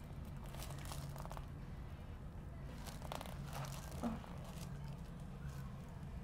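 Soft rustling and crinkling of gloved hands rubbing over skin, clothing and the treatment-table cover during hands-on muscle work at the neck and shoulder, over a low steady hum.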